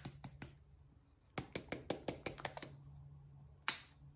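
A series of sharp clicks: one at the start, a quick run of about a dozen clicks about a second and a half in, and one more loud click near the end, over a faint steady low hum.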